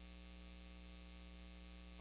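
Near silence but for a faint, steady electrical mains hum with a stack of overtones, the background hum of a recorded phone voicemail.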